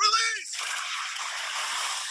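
Film trailer soundtrack: a man gives a short shout with his pitch bending, then a dense, steady roar takes over for the rest of the moment.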